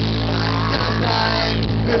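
Live rock band playing an instrumental passage: bass and electric guitar holding notes over drums. A voice comes in singing at the very end.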